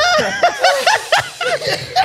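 Two men laughing hard in quick, repeated high-pitched bursts.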